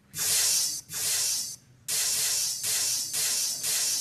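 A sampled recording of a crowd hissing "tss" to imitate a hi-hat, triggered from a pad controller: two separate hissy bursts, then repeating as a steady, rhythmic hiss from about two seconds in, pulsing about twice a second.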